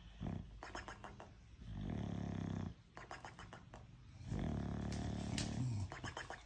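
Bulldog snoring: two long snores of a second or more each, with shorter noisy breaths between them.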